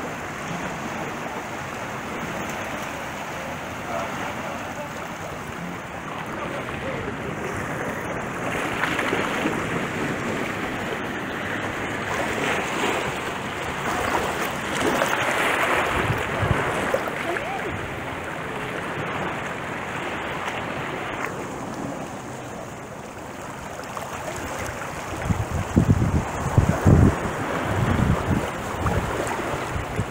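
Small waves washing and lapping in shallow seawater, swelling and easing. Near the end, wind buffets the microphone in a few loud low rumbles.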